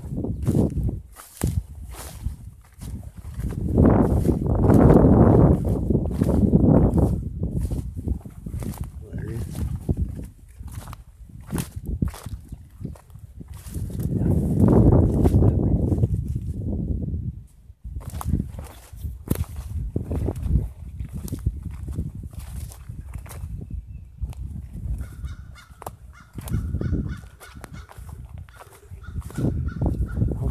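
Footsteps through dry grass and brush, with twigs snapping and branches brushing past. There are two longer stretches of heavy rustling, and a faint steady high tone near the end.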